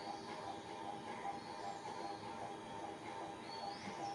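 Faint steady background noise with a low, even hum.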